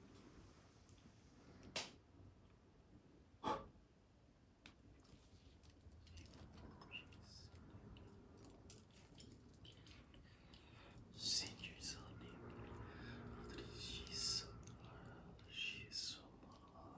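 Faint whispering by a man, with two sharp clicks about two and three and a half seconds in, and louder breathy bursts in the second half.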